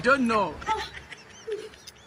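Wordless whimpering cries from a person: one louder cry falling in pitch at the start, then fainter short whimpers that die away.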